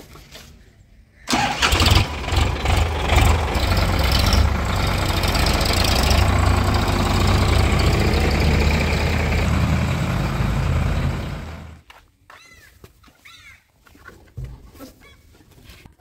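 Diesel tractor engine starting suddenly a little over a second in and then running steadily with a deep, even note, until it cuts off abruptly about three-quarters of the way through.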